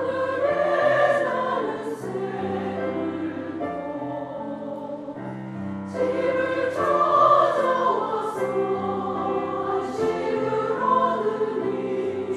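Mixed church choir singing an anthem in Korean with piano accompaniment; the singing swells loudest just after the start and again about six seconds in.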